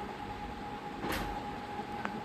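Cumin seeds sizzling in hot ghee in a small steel tadka ladle: a steady frying hiss, with one faint tick about a second in.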